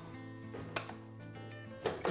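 Background music with sustained notes, over which a sharp click sounds about three-quarters of a second in and another near the end: the spring catch holding a top-load washer's console being released.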